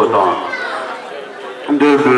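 Several people's voices talking over one another in a large hall, easing off briefly in the middle and picking up again near the end.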